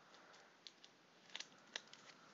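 Near silence: faint room tone with a few short, faint clicks scattered through it, a small cluster of them just before the middle.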